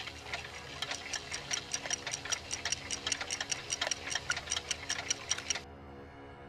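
Fast, even mechanical ticking, about seven clicks a second, like a clock, that stops suddenly near the end, over a faint steady low hum.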